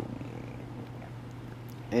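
Quiet room tone: a steady low hum with faint hiss, and a faint click near the end.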